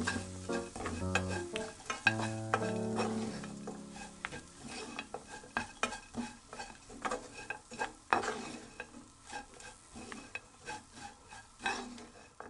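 Wooden spatula stirring and tossing small dried anchovies and almonds in a nonstick frying pan: a quick, irregular run of scrapes and clicks against the pan.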